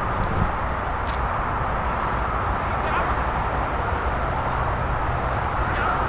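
Steady rush of distant highway traffic, an even noise that holds level throughout.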